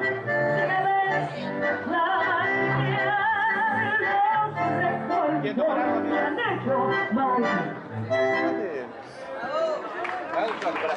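Live street tango music led by a bandoneon with sustained, wavering reedy notes over a bass line. The piece ends near the end, followed by a shout of "¡Bien! ¡Bravo!"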